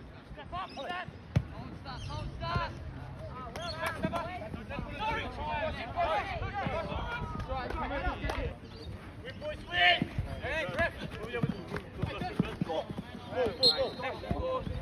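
A football being kicked, with a sharp thud about a second and a half in and further kicks later, among the shouting voices of players and spectators.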